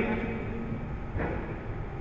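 A pause in a man's speech: a held, hesitant "uh" trails off, then a steady low rumble of background room noise runs on, with a faint brief murmur a little over a second in.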